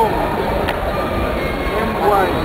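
Steady, echoing background noise of a large indoor sports hall, with distant voices mixed in and one short click shortly after the start.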